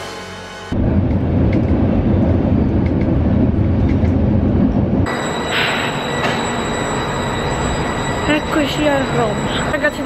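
Loud, dense rumble for about five seconds. It then changes abruptly to a railway platform sound: a steady high whine from a stopped passenger train, with background voices near the end.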